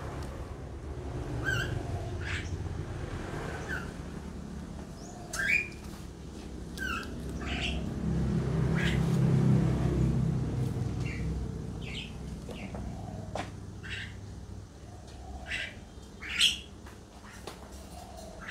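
Small birds chirping on and off, short sharp calls about every second. A low rumble swells and fades in the middle.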